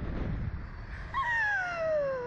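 A low rumble, then from about a second in a rider's long wail sliding steadily down in pitch as the Slingshot capsule swings.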